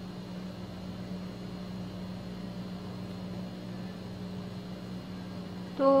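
A steady low hum over a faint even hiss, with no distinct sounds standing out from it.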